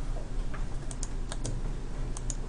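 A handful of short, sharp computer clicks, about five of them spread across the middle, from a mouse being clicked through the Windows Start menu to launch Excel.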